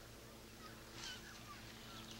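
Faint outdoor ambience: a few small, scattered bird chirps over a low steady hum and hiss.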